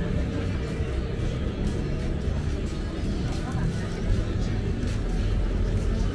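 Busy outdoor market ambience: music playing from the stalls under the chatter of passing shoppers, over a steady low rumble that swells near the end.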